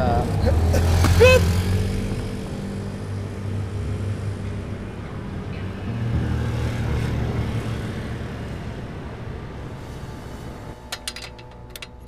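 A motorbike passes close by on a city street, its engine loudest about a second in, with a steady traffic rumble behind it that swells again about six seconds in. Near the end comes a run of sharp metallic clicks and rattles as a metal door is handled.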